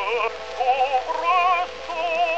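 A tenor voice singing short held notes with a wide vibrato over instrumental accompaniment, in an early acoustic gramophone recording that sounds thin, with little bass and no top.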